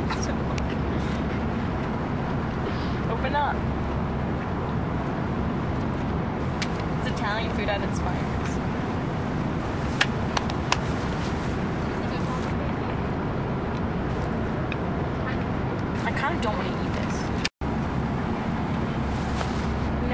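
Steady low roar of an airliner cabin in flight, from the engines and the air rushing past. A few sharp clicks from the meal tray come about ten seconds in, and faint voices murmur underneath. The sound cuts out for an instant near the end.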